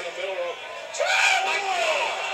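Wrestling crowd shouting: a short call, then one voice holding a long, high shout from about a second in, over crowd noise.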